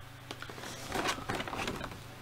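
Faint handling noises: soft rustling and a few light clicks, loudest about a second in, as a Megazord sword letter opener is taken in hand and turned over.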